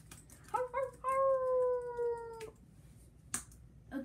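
A child's voice giving one long, drawn-out cry that falls slightly in pitch and cuts off sharply, with a few faint taps on a laptop keyboard.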